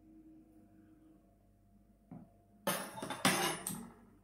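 A spoon clicks once about two seconds in, then comes about a second of slurping as a spoonful of cold okroshka is tasted for salt.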